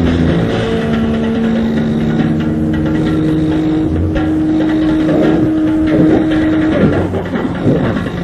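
Lo-fi 1990s demo-tape recording of extreme metal: distorted guitar holding droning notes that shift pitch a few times, turning into rougher, wavering sounds from about five seconds in.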